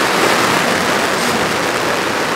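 A steady rushing hiss of background noise, with no distinct events.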